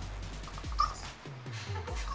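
Music playing back at moderate level, with other sounds mixed in from a funny-video clip being watched.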